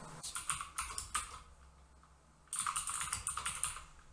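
Typing on a computer keyboard to enter a short file name. There are two quick bursts of keystrokes: one in the first second and a half, then a brief pause, then another from about two and a half seconds in until near the end.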